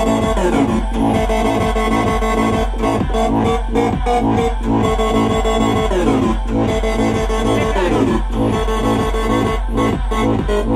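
Electronic dance track playing loud through studio monitors: a steady kick-and-bass beat of about two strokes a second under held synth chords, with synth sweeps falling in pitch near the start and again around six and eight seconds in.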